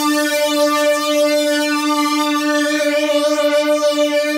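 Korg microKORG synthesizer holding one long note, played through an Ibanez stereo chorus pedal and heard in mono.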